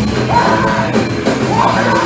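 Loud live band playing heavy rock music: electric guitar and drums, with two yelled vocal lines about half a second and one and a half seconds in.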